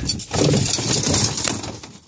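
Gear being shifted about in a plastic sled: snowshoes, wooden sticks and wire. There is a knock at the start, then scraping and rattling for about a second and a half that fades away.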